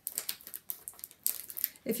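Clear plastic flip flap sheet being handled and flexed in the hands, giving a run of light, irregular crinkles and clicks.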